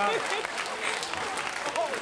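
Studio audience applauding, with a few snatches of voices over it.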